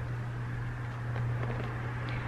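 A steady low hum over a faint hiss, with a few faint soft clicks.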